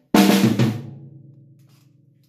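Acoustic drum kit played with sticks: a quick single-stroke-four fill, fast alternating strokes, starting suddenly about a tenth of a second in. The drums then ring and fade out over the next second or so.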